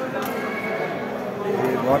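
People's voices in a crowded hall, indistinct chatter that grows louder near the end.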